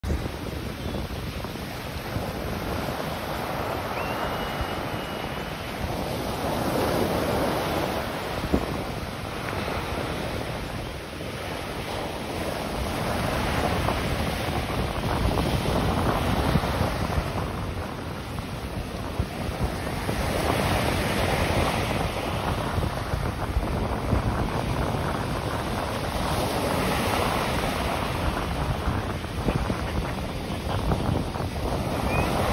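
Surf breaking and washing up a sandy beach, a continuous rushing noise that swells and eases as each wave comes in.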